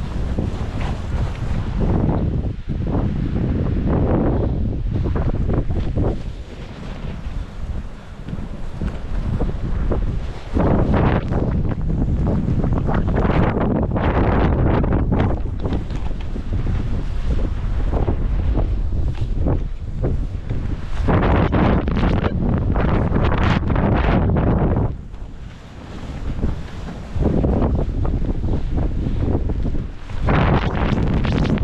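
Wind buffeting the microphone of a skier's camera during a fast descent, with skis scraping through chopped-up snow in repeated surges as the skier turns. The loudness drops briefly a little before the end.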